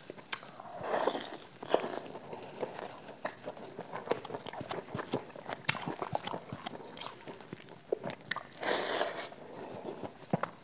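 Close-miked chewing and biting of fried chicken: many small wet mouth clicks and smacks, with two louder swells about a second in and near the end.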